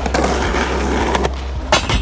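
Skateboard wheels rolling with a loud, rough noise for about a second, then a sharp clack from the board near the end.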